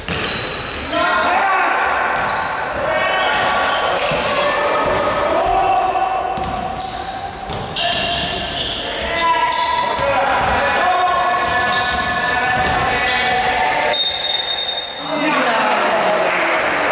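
Several voices shouting and calling out, ringing in a large sports hall, with a basketball bouncing on the court now and then.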